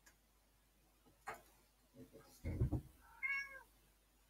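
A domestic cat meows once, a short arching call, about three seconds in, just after a dull low thud; a light click comes earlier.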